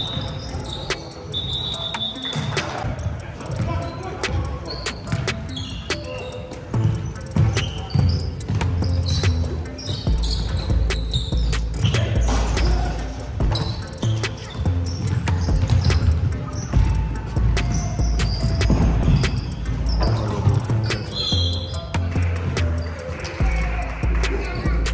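Basketball game on a hardwood gym floor: a ball dribbling and bouncing with many sharp thuds, and a few short high shoe squeaks. Music with a heavy bass comes in about ten seconds in and plays under it.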